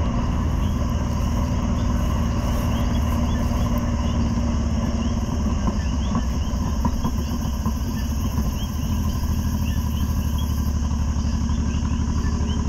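Chorus of coquí frogs and crickets: many short rising chirps, repeating irregularly, over a steady low hum.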